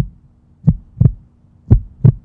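Heartbeat sound effect: deep double thumps in a lub-dub rhythm, about one pair a second.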